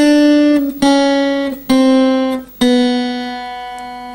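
Acoustic guitar playing single notes slowly down the second string in semitone steps, the descending end of a chromatic scale exercise: four plucked notes a little under a second apart, each a step lower, the last on the open B string left to ring and fade.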